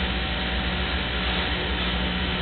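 Steady hiss with a low hum underneath, even throughout, with no distinct knocks or voices.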